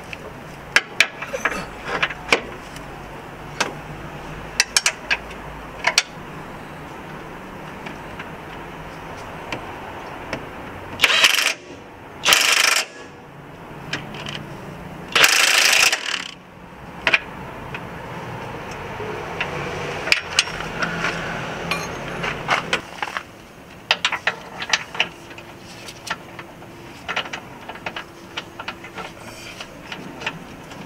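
DeWalt cordless impact wrench running in three short bursts near the middle, the last a little longer, as it runs in the new control arm's fastening bolts. Sharp metallic clicks and clinks of tools and parts come and go throughout.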